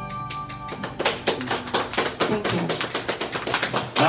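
A song's backing track ending on a held chord that dies away in the first second, then scattered, uneven hand clapping.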